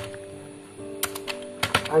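Computer keyboard keystrokes: a single click at the start, then a quick run of several clicks in the second half, over a faint steady tone.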